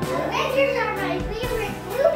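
Children's voices calling out in high, rising-and-falling tones, with music in the background.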